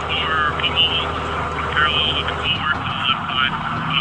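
Military convoy vehicle's engine running steadily, with thin, indistinct radio voices over it. The engine note shifts about halfway through.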